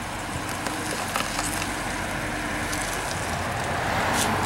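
Steady road noise from idling cars and traffic, growing a little louder near the end.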